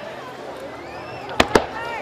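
Aerial fireworks bursting: two sharp bangs in quick succession about a second and a half in.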